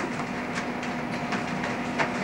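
Tissue paper and gift wrapping rustling and crinkling in quick, irregular crackles as a present is unwrapped, over a steady low hum.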